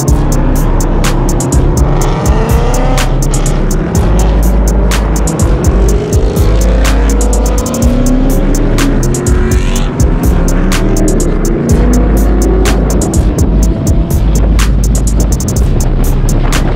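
Car engines revving and accelerating, several overlapping rises in pitch, as a line of cars pulls away, mixed with music that has a heavy bass and a steady beat.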